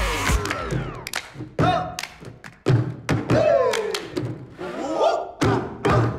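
A rhythmic hand-clap and bottle game at a table: hand claps, and plastic drink bottles knocked down on the table top, coming as a run of separate sharp thumps.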